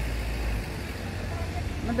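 Street traffic noise with a truck's engine rumble that fades away about half a second in as it moves off, leaving a steady haze of road noise.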